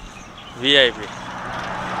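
A steady low motor hum with a hiss that swells from about a second in, after a short spoken exclamation.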